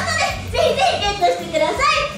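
Speech only: a young woman's high-pitched voice talking into a handheld microphone, heard through the hall's PA.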